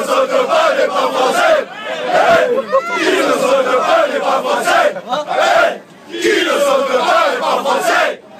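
A group of French football supporters chanting and shouting together in a crowded train carriage, many male voices at once and loud. The chant breaks off briefly about six seconds in, then picks up again.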